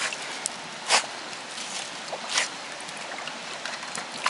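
Water splashing and sloshing in a galvanized metal bucket as an English pointer dunks its head in after trout, with two louder splashes about one second and two and a half seconds in.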